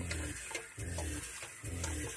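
Water poured from a pitcher into the upper chamber of a stainless steel Berkey water filter, with a low pulse recurring about once a second underneath.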